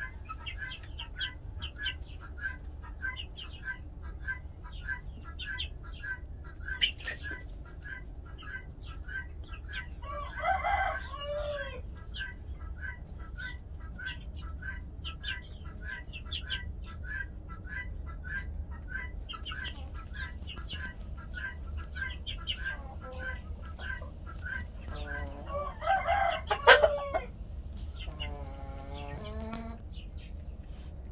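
A flock of chickens calling, Light Sussex hens and a rooster among them: a steady run of short high calls, about three a second, with a longer call about ten seconds in and louder drawn-out calls near the end.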